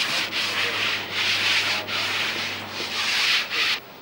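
Wooden hand float rubbed back and forth over a plastered wall: a run of scraping strokes, each under a second, with short breaks between, stopping suddenly near the end.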